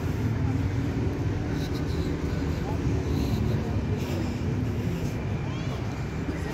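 Steady low background rumble, with faint distant voices.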